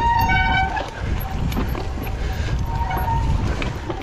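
Mountain bike rolling down a dry dirt trail: a steady low rumble of tyres on earth and roots, with wind on the camera microphone. A brief high squeal from the brakes sounds near the start, and a fainter one about three seconds in.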